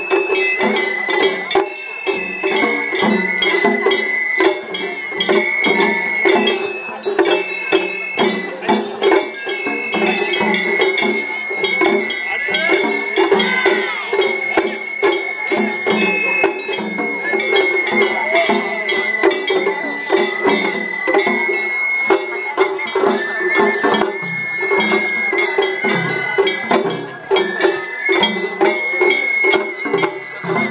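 Live Japanese festival hayashi music from musicians on a float: a high bamboo flute melody over fast, steady taiko drumming and a small metal gong clinking in time.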